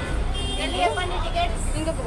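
Steady low rumble of a bus engine heard from inside the passenger cabin, with voices talking over it.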